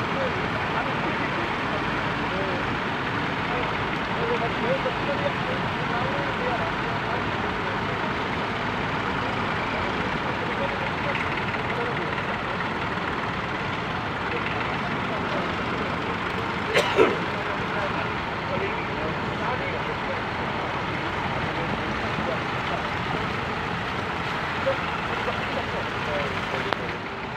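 Engines of a procession of vintage tractors running at low speed as they move off in a line, with onlookers' voices mixed in. A single sharp knock stands out about two-thirds of the way through.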